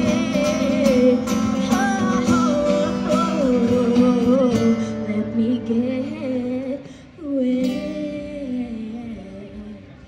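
A woman singing long, wavering held notes without clear words over acoustic guitar. The voice drops away briefly about seven seconds in, then a last phrase fades out as the song ends.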